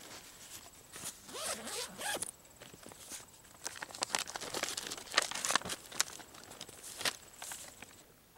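Backpack zipper pulled open in several short runs, with a plastic map bag rustling as it is drawn out of the pack.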